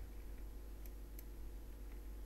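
Quiet steady background noise and low hum from a desktop microphone, with two faint clicks about a second in, a computer mouse clicking.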